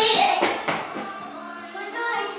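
A person singing a few notes, ending on a steady held low note, with a couple of light knocks about half a second in.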